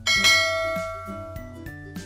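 A bell-chime 'ding' sound effect, struck once and ringing down over about a second, for a subscribe-button animation's notification bell, over background music.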